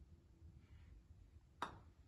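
A putter striking a golf ball once: a single sharp click about one and a half seconds in, with a short ring after it, over near-silent room tone.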